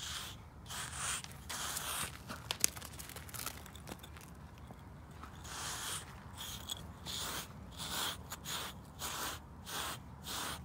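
Slick 'N Easy shedding block, a pumice-like grooming block, scraping in quick strokes over a horse's thick shedding winter coat, about two strokes a second. The strokes ease off for a couple of seconds in the middle, where there are a few light clicks, then start again.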